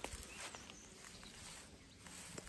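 Quiet outdoor background with a single sharp click at the very start and nothing else standing out.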